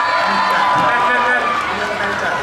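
A man talking into a microphone over a PA system, with audience voices around him.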